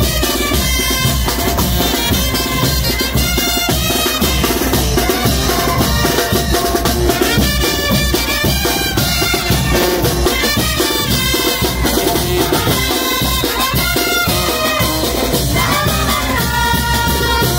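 Loud live brass band of trumpets, sousaphone, snare drums and crash cymbals playing a steady, driving marching tune, the brass-and-drum music that accompanies chinelo dancers.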